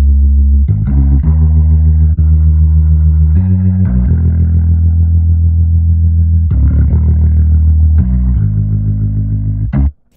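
Electric bass guitar loop playing sustained low notes through a Leslie-style rotary speaker emulation, the rotary effect switching between slow and fast speeds. The line changes note every second or two and stops abruptly near the end.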